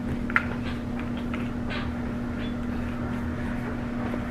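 Hands kneading soft biscuit dough in a plastic mixing bowl: a few faint soft squishes and a light tap about half a second in, over a steady low hum.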